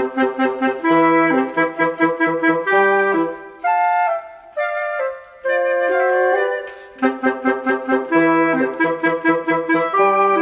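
A wind trio of flute, clarinet and bassoon playing chamber music together in quick, short notes, the bassoon giving a repeated low line beneath the flute and clarinet; the bassoon drops out briefly twice near the middle.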